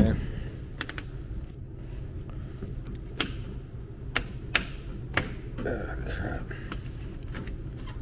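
Scattered sharp plastic clicks and knocks from handling a plastic bottle and the cap of a coil-cleaner jug, over a steady low background hum.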